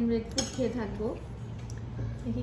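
Metal spoons and forks clinking and scraping on ceramic plates while fried rice is eaten, with a sharp clink about half a second in.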